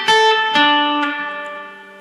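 Acoustic guitar played as single plucked notes: three notes stepping down in pitch, about half a second apart, each left ringing and fading out.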